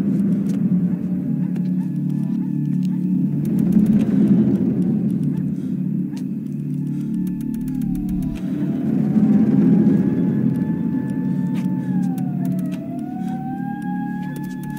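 Film soundtrack: a steady low rumbling drone, with a thin wailing tone that slowly rises and then drops sharply twice in the second half, like a distant siren.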